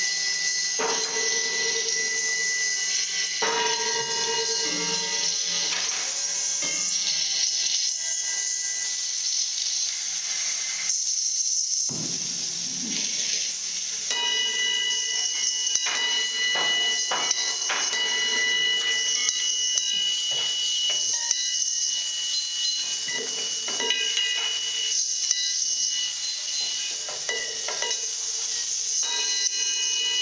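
Improvised electroacoustic music from laptop electronics: a dense hissing noise texture with steady high tones and scattered clicks. The low end drops out briefly about eleven seconds in, and sustained high tones come in around fourteen seconds.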